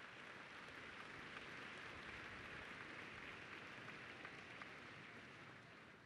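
Faint audience applause, an even crackling hiss of many hands clapping, dying away near the end.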